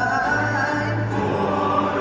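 Cape Malay choir of men and boys singing a Malay song in harmony, holding long sustained notes.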